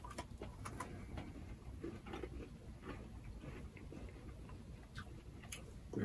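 Faint chewing of a Crunch bar, milk chocolate with crisped rice, by two people: scattered soft crunches and mouth clicks, a few sharper ones near the start and about five and a half seconds in.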